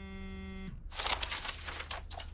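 A mobile phone buzzing with an incoming call: a steady buzz that stops after under a second, followed by about a second of rattling noise.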